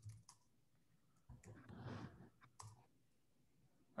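Faint, scattered keystrokes on a computer keyboard as terminal commands are typed: a few clicks near the start and a couple more past the middle, with a soft faint rustle in between.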